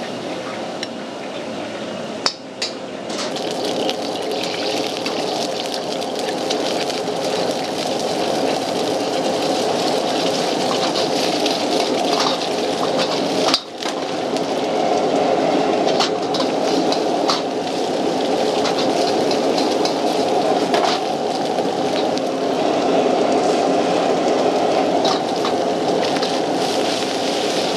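Powerful gas wok burner running with a steady rush as rice is stir-fried in a wok, with a metal ladle clinking and scraping against the pan every few seconds.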